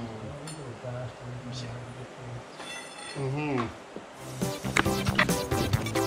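A man's wordless vocal sounds, gliding up and down in pitch, then edited-in background music with drums starting about four seconds in.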